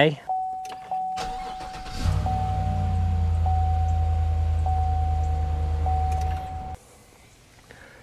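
A steady electronic tone sounds, and about two seconds in a vehicle engine starts and runs with a low rumble. Both cut off suddenly near the seven-second mark.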